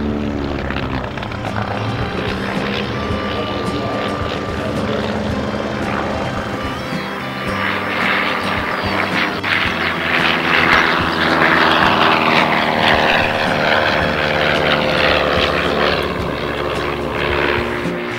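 Propeller drone of a de Havilland Canada DHC-1 Chipmunk's 145 hp Gipsy engine through an aerobatic sequence. It grows louder and brighter about eight seconds in as the aircraft comes closer under power, and the pitch slowly falls before easing off near the end.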